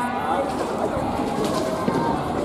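Many people's voices overlapping in a busy, echoing sports hall, with a single sharp knock near the end.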